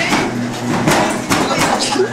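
A treadmill running with a steady motor hum, its belt thudding as a person stumbles and falls onto it, with a rapid series of knocks and thumps against the deck and frame. Voices shouting and laughing come in over it.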